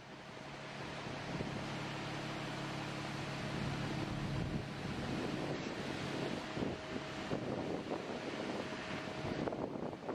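Concrete-pour site noise: a machine engine hums steadily under a rushing, wind-like noise on the microphone.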